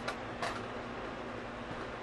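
Two short clicks near the start, from fingers picking sauced chicken strips out of a takeout box, then steady room hum.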